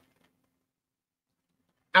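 Near silence: room tone, until a woman starts speaking just before the end.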